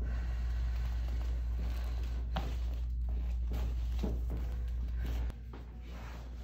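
A few short, sharp clicks, the clearest about two seconds in, over a steady low hum: cracks from a chiropractic thrust on the mid (thoracic) spine. The hum drops suddenly near the end.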